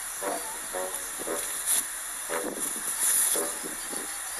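A steady hiss with short, faint voice-like sounds every half second or so, and a few louder breathy bursts of hiss.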